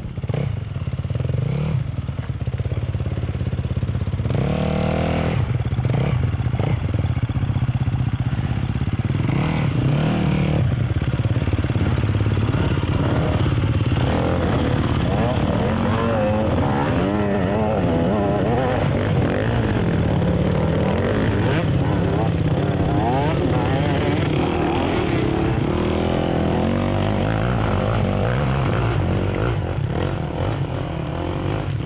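Several enduro motorcycle engines revving under load on a steep, rocky climb. Their pitches rise and fall and overlap, with more bikes going at once from about halfway through.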